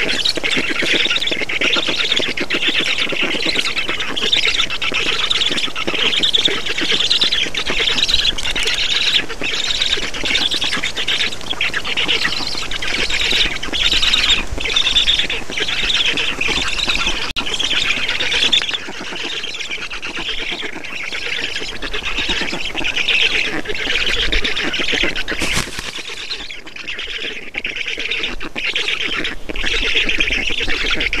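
Black stork chicks calling rapidly and continuously on the nest, begging for food while the adult feeds them. The calling grows quieter about two-thirds of the way through.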